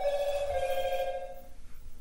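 A ringing tone with a slight warble, starting suddenly at a steady pitch with overtones and fading out about a second and a half in.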